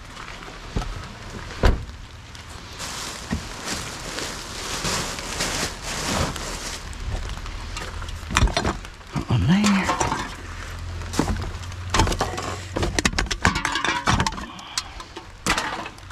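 Rubbish being rummaged through by hand in a plastic wheelie bin: cans, bottles and cardboard clattering and clinking, busiest over the last few seconds. A single sharp knock about two seconds in.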